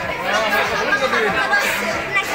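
People talking and chattering, no clear words.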